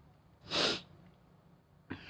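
A man's single short, sharp burst of breath, about half a second in.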